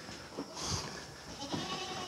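Goats eating dry alfalfa hay at a wooden trough, heard faintly.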